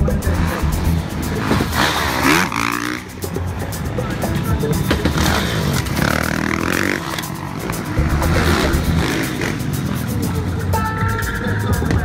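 Supermoto motorcycle engines revving up and down as the bikes ride past, over loud background music.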